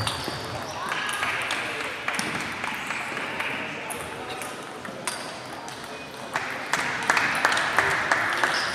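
Table tennis balls clicking off bats and tables in a rally-filled hall: irregular sharp ticks from several tables at once, coming thicker near the end, over a murmur of voices.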